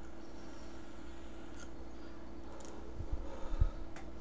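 A vape drawn on quietly over a steady low room hum, then a few low puffs of breath near the end as the vapor is exhaled.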